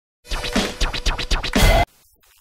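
A short, loud music stinger made of rapid scratch-like strokes, starting after a moment of silence and cutting off abruptly near the end.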